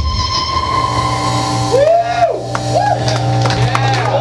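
A rock band's last chord ringing out over a steady amplifier hum. About two seconds in, audience members whoop in short rising-and-falling calls as the song ends.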